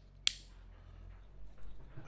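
A single sharp click about a quarter second in from the wired circuit being handled: inline fuse holders and lever connectors on red wire. Faint rustle of the wires follows.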